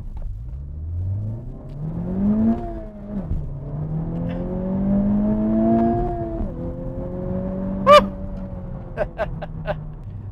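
Honda Civic Type R's 2.0-litre turbocharged four-cylinder engine accelerating flat out from a standstill, heard inside the cabin. The revs climb through first gear, drop at an upshift about three seconds in, climb again through second, and drop at a second upshift about six and a half seconds in, after which the engine runs more steadily.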